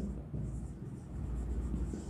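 Marker pen writing on a whiteboard, faint, over a steady low hum.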